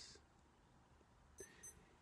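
Near silence: room tone, with two faint, short high ticks about a second and a half in.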